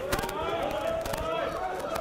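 Distant men's voices calling out across an open rugby pitch, fainter than the close voice either side, with a few light knocks.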